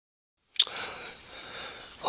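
No sound for the first half second, then a sharp click and a faint, steady hiss with a thin high tone.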